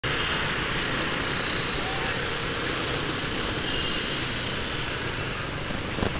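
Motor scooter riding through city traffic: a steady wash of engine and road noise.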